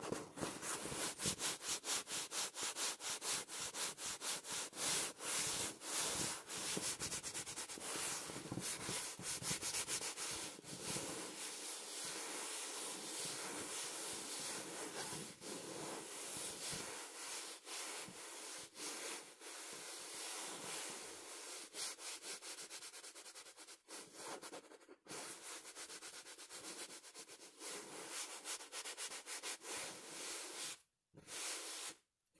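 Fingers scratching and rubbing the fabric cover of a cushion in a fast run of strokes. The strokes grow sparser and more broken in the second half.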